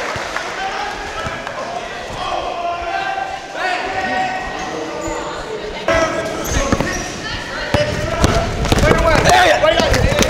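Basketball being dribbled on a gym floor, bouncing repeatedly, with the bounces growing sharper and more frequent in the second half as the drive to the basket ends in a cluster of impacts. Spectators' voices chatter throughout.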